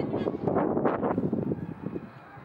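Wind buffeting the microphone, a rough uneven rumble, mixed with rustling handling noise from the moving camera. It eases off near the end.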